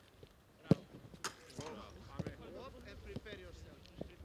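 A football struck hard, a single sharp thud about two-thirds of a second in, followed by a second, lighter knock about half a second later.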